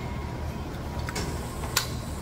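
Small metal clicks as the parts of a Toyota Hilux free-wheel (manual locking) hub are fitted together by hand: a faint click about a second in and a sharper one near the end, over a steady low hum.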